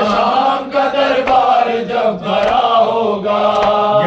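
Men's voices chanting an Urdu noha (lament) in a sustained, wavering melody, with a sharp slap about once a second: the beat of matam, mourners striking their chests in time.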